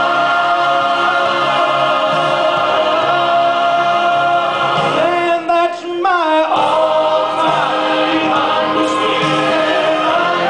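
Church choir and a male soloist singing a gospel song together, holding long sustained notes. About six seconds in the singing briefly drops away, with a falling slide, then comes back in.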